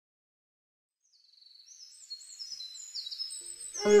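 Bird chirping, a string of short, high chirps that fade in after about a second of silence and grow louder. Just before the end, music with a bowed string melody comes in.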